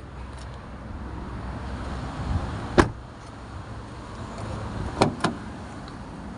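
Mitsubishi Triton pickup doors: a door shutting with one sharp latch bang a little under three seconds in, then two quick latch clicks about a quarter second apart about five seconds in as a door is opened. A steady low background hum runs underneath.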